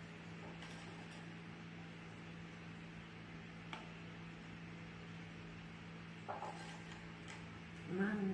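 Quiet room with a steady low hum and a few faint taps and clicks of kitchenware as biscuits are set into pudding in a metal ring pan, with a slightly louder clink about six seconds in.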